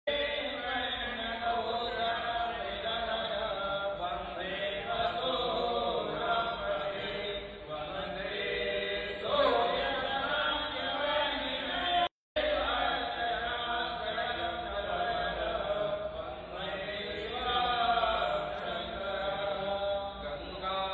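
Hindu priests chanting mantras in a steady recitation during a puja, with voices overlapping. The sound cuts out completely for a moment about twelve seconds in.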